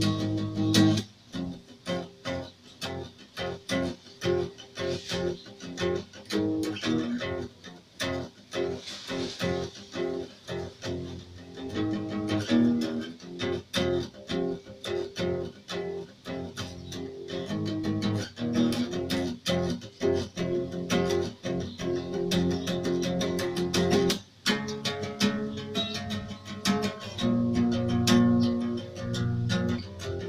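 Acoustic guitar playing a continuous run of plucked and strummed chords, with a brief break about two-thirds of the way through.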